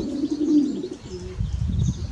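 A pigeon cooing: a low, soft hoot held for about a second, then a shorter note. A low rumble follows near the end.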